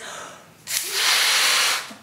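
A breath drawn in, then a forceful blow of about a second into a rubber party balloon, inflating it further.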